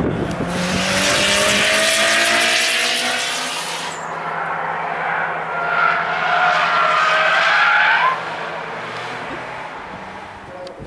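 Car tyres skidding and squealing as track cars corner hard. The first skid, about three and a half seconds long, comes with the engine revving up. A second, wavering squeal follows from about six to eight seconds in.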